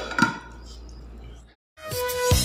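A couple of brief clinks of tableware, then a faint steady hum. After a sudden cut, background music starts near the end.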